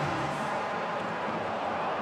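Steady noise of a large football stadium crowd, just after the home side has scored.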